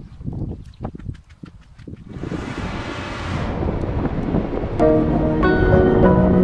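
Low irregular thumps with wind buffeting the microphone, then a rising whoosh about two seconds in, and background music with steady held notes starting near the end.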